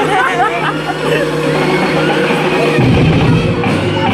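Loud dance music for the routine, with a heavy bass beat coming in about three seconds in, and voices shouting and whooping over it.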